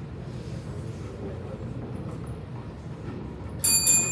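Steady low room rumble, then near the end a bell struck once, loud and sudden, its bright tone ringing on as it fades.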